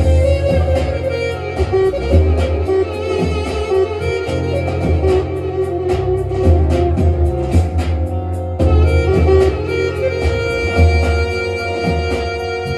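Bağlama (Turkish long-necked saz) played with quick picking in an instrumental passage of a Turkish folk song, over a steady backing with a deep pulsing bass.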